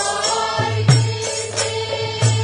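Group of voices singing a chant-like song in unison, held notes over a drum beaten in a steady rhythm.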